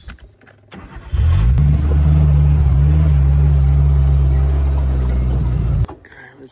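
A four-wheel-drive vehicle's engine starts about a second in, rises briefly in pitch as it catches, then runs steady and loud. The sound cuts off suddenly near the end.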